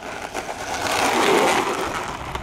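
Twin electric-ducted-fan RC jet (Freewing F-14 Tomcat) touching down and rolling out on a concrete runway: a rushing mix of fan noise and wheels on concrete that swells about a second in and eases off near the end. The roll is smooth, without the rattling clatter of hard plastic wheels: the landing sound the narrator holds up as the good example.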